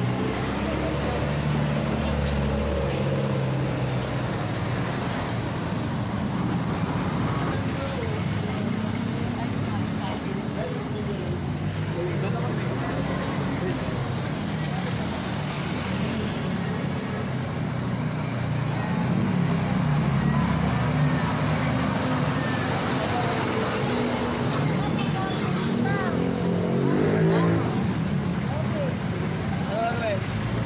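Busy street ambience: road traffic engines running steadily, mixed with the chatter of passing people.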